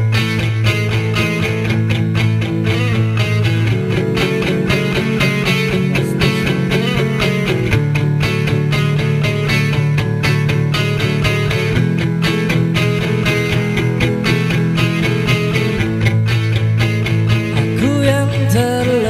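Instrumental introduction of a pop-rock song led by strummed guitar, with a steady beat and the chords changing about every four seconds.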